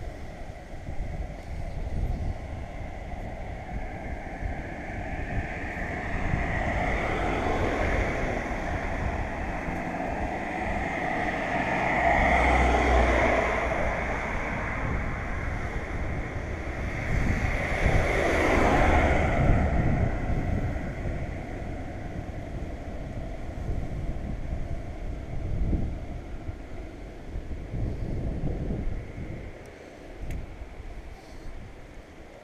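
Wind buffeting a GoPro's microphone in a steady low rumble, with the sound of passing road traffic swelling up and fading away twice, about twelve and nineteen seconds in.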